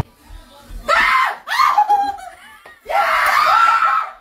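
A person screaming: three loud, high-pitched screams that waver in pitch, about a second in, at about a second and a half, and a long one from about three seconds in.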